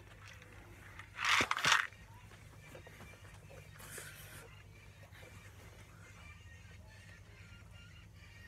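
A short, loud breathy whisper about a second and a half in and a fainter one near four seconds, over a low steady room hum and faint music.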